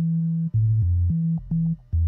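Electronic music from a DJ mix: a low synthesizer bass riff of short held notes stepping between a few pitches, about three or four notes a second, with brief gaps.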